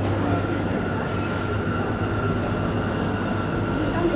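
Steady low machine hum with a thin, high steady whine above it, typical of a food shop's refrigeration and air-handling plant.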